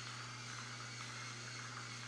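Battery-operated salt and pepper grinder's small electric motor whirring steadily as it grinds seasoning, with a thin high whine.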